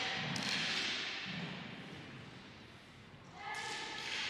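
Quiet, echoing sports-hall ambience that fades over the first three seconds, with one faint knock about a third of a second in. A distant voice comes in from about three and a half seconds.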